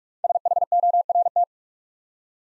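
Morse code tone of about 700 Hz sending the word "SHORT" at 45 words per minute, a quick run of dots and dashes lasting a little over a second.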